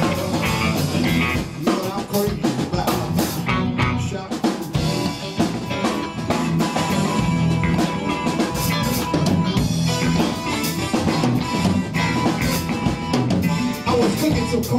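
A live band playing an instrumental passage with no singing: electric guitar, electric bass and a drum kit keeping a steady beat.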